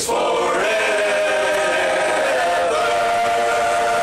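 Large male barbershop chorus singing a cappella, holding one long, loud chord that shifts slightly about two-thirds of the way through.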